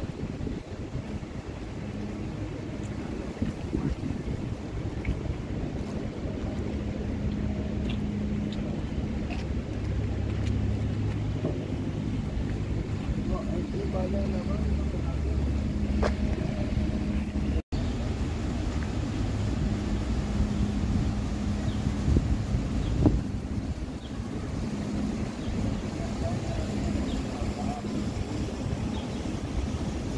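City street ambience: a steady low rumble of traffic and idling vehicle engines, with occasional voices of passers-by. The sound cuts out for an instant about two-thirds of the way through.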